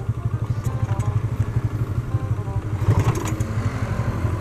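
Drag-race motorcycle's 150cc engine running steadily at low revs, its exhaust note a fast, lumpy pulse. A brief clatter of clicks about three seconds in.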